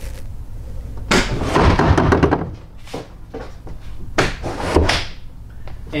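A Hobie Pro Angler kayak's skeg board and rudder dropping into their deployed positions as the cockpit pull handles are worked. There are two spells of clunking and knocking, each about a second long: the first about a second in, the second about four seconds in.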